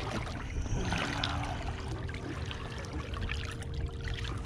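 Water splashing and lapping at the side of a boat where a hooked tautog is held at the surface on the line. A faint steady hum runs underneath.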